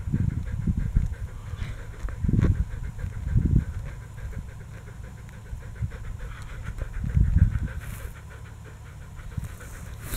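Black Labrador panting rapidly and steadily close by, with several low thuds over it.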